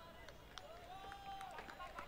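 Faint, distant shouting of players on a football pitch, with one long call held through the middle and a few sharp knocks in the second half.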